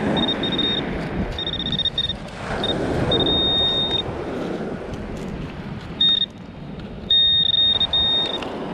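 Handheld metal-detecting pinpointer sounding its alarm: a high-pitched tone in short bursts and fast pulses, held steady for about a second in the middle and again near the end as it sits on a metal target. Under it is the scraping rustle of a hand sifting through sand and pebbles.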